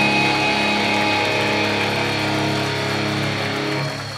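Live band's electric guitars, played through Marshall amplifiers, holding a sustained closing chord that rings out and fades slowly, then stops just before the end.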